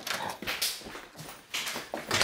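A door knob turned and a glass-paned door opened, with rustling and knocking handling noise from a handheld camera. There are two louder noisy bursts, about half a second in and near the end.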